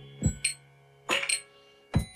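Electronic beat from sample clips triggered in Ableton Live: a few scattered drum hits over a low held bass tone that fades out about a second in, with short quiet gaps between the hits.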